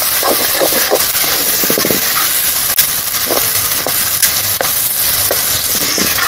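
Chopped onions and tomatoes sizzling in hot oil in a black kadai, a steady hiss, while a metal spatula stirs them with occasional scraping clicks against the pan.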